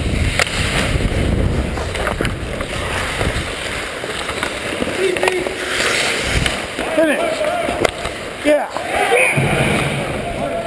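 Ice hockey play heard from among the skaters: skate blades scraping and carving on the ice with a steady rush of noise, and a few sharp clacks of sticks and puck. Players call out and shout, unclear and louder in the second half.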